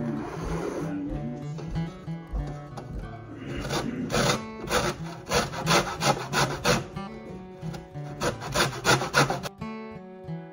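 Lemon rubbed up and down a stainless steel box grater for zest, a run of rasping scrapes at about three strokes a second that stops near the end, over background music.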